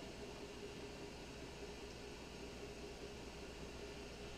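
Quiet room tone: a steady hiss with a faint, even hum.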